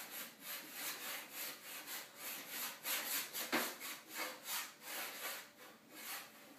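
Chalk scribbling back and forth on a chalkboard easel, about three strokes a second, with one heavier stroke a little past halfway.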